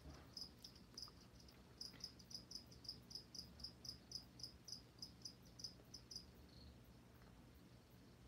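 A cricket chirping faintly in short, even chirps about four or five a second, with a brief pause about a second in, stopping about six seconds in.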